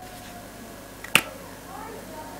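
A single sharp click about a second in, from the cap of a felt-tip marker snapping on or off as the markers are swapped.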